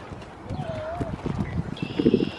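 Irregular low thumps of footsteps on playground wood chips, starting about half a second in, with a brief faint wavering call near the start.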